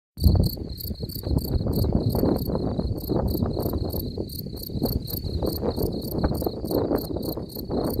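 Male European field cricket stridulating, its raised forewings making a loud, high calling song of short chirps repeated evenly about three times a second. A low rumble runs underneath.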